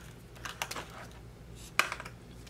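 Plastic felt-tip marker being handled: a few light clicks, then one sharper click near the end.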